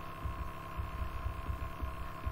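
A pause in speech filled by a steady electrical hum of the recording, with a thin steady tone and irregular low rumbling underneath.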